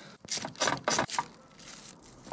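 Plastic sheeting over an engine crinkling and rustling as gloved hands work beneath it: a handful of short rustles in the first second or so, then quieter.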